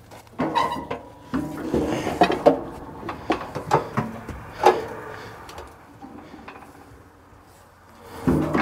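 Clanks, rattles and knocks of a steel Arrowquip cattle squeeze chute as its gates and latches are worked and a calf is let up into it, with a brief metallic ring about half a second in. The knocks thin out over the last few seconds.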